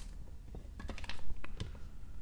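Hard plastic graded-card slabs clicking against one another as one is slid off a stack, a handful of light clicks in quick succession.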